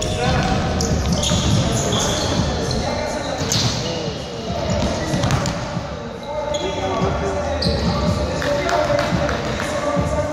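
Basketball game on a hardwood gym floor: the ball bouncing as it is dribbled, sneakers squeaking in short high chirps, and players' indistinct calls, all echoing in the large hall.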